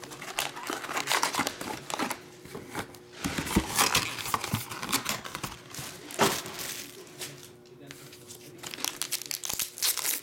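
Foil trading-card packs crinkling as they are handled and taken out of a cardboard hobby box, in irregular bursts, with a foil pack being torn open near the end.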